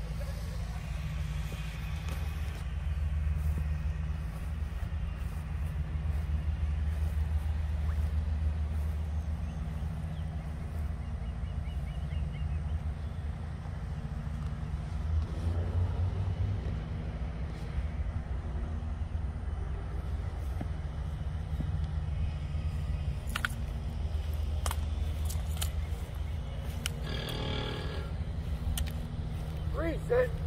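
Steady low background rumble, with a few faint sharp clicks in the last third and a short louder sound about two seconds before the end.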